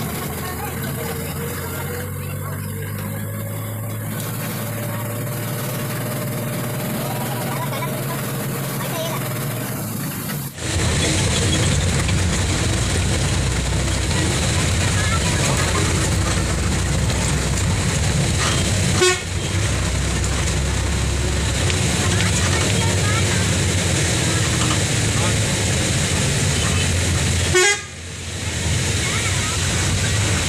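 A moving bus heard from inside: the engine's steady drone and road noise, with horn toots. About ten seconds in, the sound breaks off abruptly and comes back louder.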